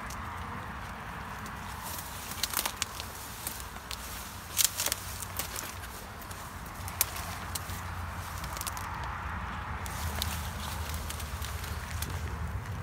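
Footsteps and rustling in grass and brush, with scattered sharp clicks and crackles over a steady low outdoor rumble.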